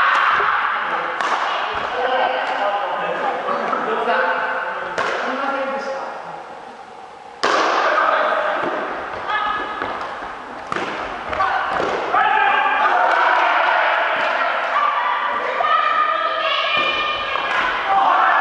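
Badminton rally: rackets hitting the shuttlecock with sharp strikes every second or two, the loudest about seven seconds in, each ringing on in a large echoing hall. Players' voices call out throughout.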